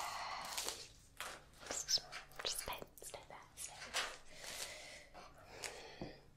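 A woman's soft whispering and breathing, with a few small clicks.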